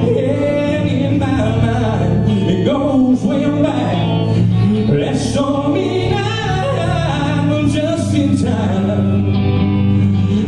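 A church praise band playing a gospel song live: a man singing lead over electric guitars, bass and keyboard.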